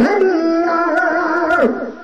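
A man singing a Sindhi kafi into a microphone: one long held, slightly wavering note that glides down and breaks off near the end, leaving a faint trailing echo.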